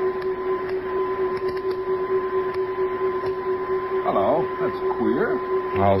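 Steady electronic hum of a radio-drama spaceship cabin: two constant tones, one low and one higher, over a hiss. Two short sliding voice-like sounds come in about four and five seconds in.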